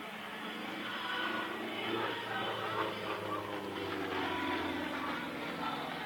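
Yakovlev Yak-55's nine-cylinder radial engine and propeller running through an aerobatic manoeuvre, its note falling in the second half.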